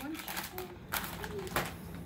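Handling noises at a kitchen table: a plastic bag of croutons rustling and being set down, with a sharp knock about a second and a half in.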